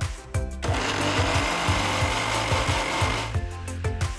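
Electric mixer grinder grinding herbs, chilies and water into a wet chutney paste. The motor starts about half a second in and stops shortly before the end. Background music with a steady beat runs underneath.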